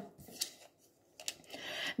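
A tarot card handled on a table: a couple of light taps, then the card sliding across the table surface near the end as it is laid down in the spread.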